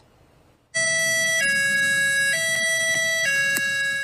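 Vehicle-mounted Whelen siren speaker sounding a two-tone high-low siren, alternating between a higher and a lower tone about once a second and starting just under a second in. This high-low siren is Nevada County's signal to evacuate.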